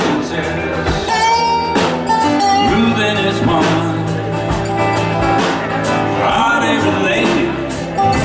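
Live roots-country band playing a song: drum kit keeping the beat under acoustic and electric guitar, upright bass and keyboard, with a sung vocal line.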